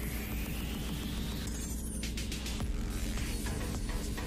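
Electronic background music with a steady low bass and a rising sweep that stops about a second and a half in.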